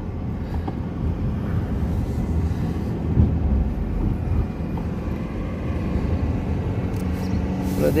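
Car driving along a paved road, a steady low rumble of road and engine noise heard from inside the cabin.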